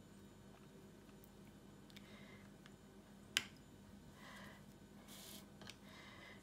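Mostly quiet, with a few faint scratchy swishes of a paintbrush working paint in a small metal watercolour tin, and one sharp click a little past halfway.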